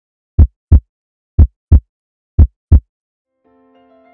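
Heartbeat sound effect: three double beats (lub-dub), about one a second. Soft music with held notes fades in near the end.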